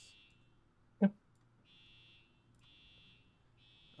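An electronic alarm beeping: a high, steady beep a little under a second long, repeating about once a second. It is not very loud.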